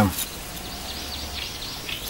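Quiet outdoor background with a low steady rumble and a few faint bird chirps.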